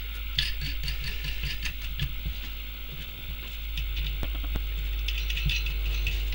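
Scattered light clicks and knocks from a reassembled alternator's metal housing being handled and turned over on a workbench, over a steady low hum.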